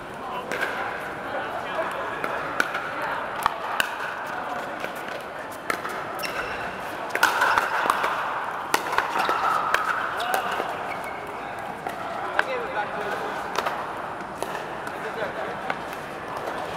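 Pickleball paddles hitting the hard plastic ball: sharp, irregular pops from several courts at once, over the steady chatter of players.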